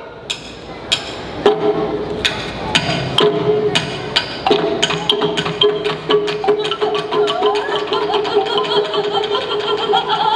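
Live stage percussion: a few sharp knocking strikes at first, then a quick patter of strikes from about two seconds in, over a long held pitched note.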